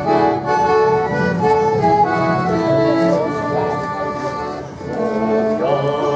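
Live folk dance music from a small band led by accordion, sustained chords under a melody. A sliding tone comes in about three seconds in and again near the end.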